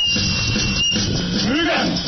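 A thin, steady high tone for about a second, then a man's declaiming voice, amplified over a sound system, begins about a second and a half in.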